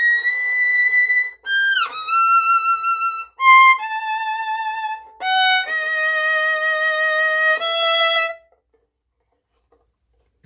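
Solo violin played high up the fingerboard with vibrato: a short phrase of notes stepping downward, with a quick downward slide about two seconds in. It ends on a long held lower note that stops about eight and a half seconds in.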